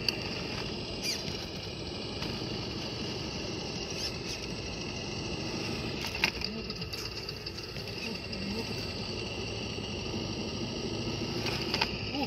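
Traxxas TRX-4 RC crawler's electric motor and geared drivetrain whining steadily as it crawls slowly up a rock crack, with a few sharp clicks of tires and chassis on the rock.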